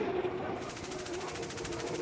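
Turbine-powered unlimited hydroplane running flat out, a steady rushing noise with a faint even hum.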